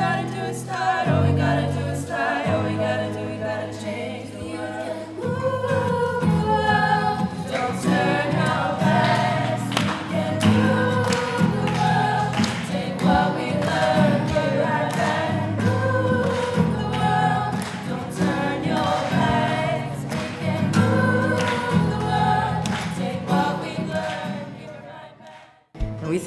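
Young women singing a song, melody carried by voice over a low sustained accompaniment, fading out at the end.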